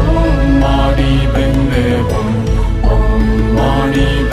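A Buddhist mantra chanted to music, sung melody lines over a steady deep bass.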